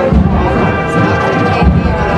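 Spanish processional brass-and-drum band (agrupación musical) playing a march: brass holding chords over drums, with heavy drum beats just after the start and again near the end.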